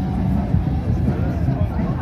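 Wind buffeting the phone's microphone: a loud, uneven low rumble, with faint voices in the background.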